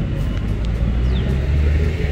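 Low, steady engine rumble of a large police bus standing with its engine running.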